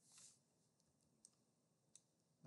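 Near silence, with a couple of faint, short computer mouse clicks.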